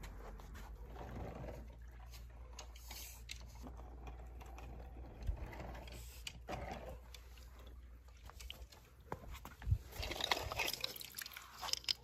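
Quiet sloshing of a pool skimmer net moving through swimming-pool water over a low steady hum, with louder splashing and clicks near the end as the net comes up out of the water.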